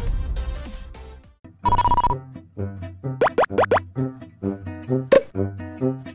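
Edited-in sound effects leading into light outro music. A noisy effect fades out over the first second, a short high beep sounds about two seconds in, and a few quick rising whistle-like glides follow. Bouncy plucked music with a bass line then starts, with a pop about five seconds in.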